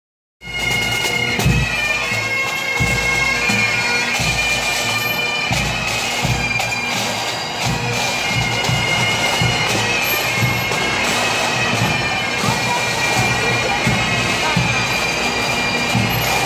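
Bagpipes playing in a parade, with steady held drone tones under the tune and low drum beats.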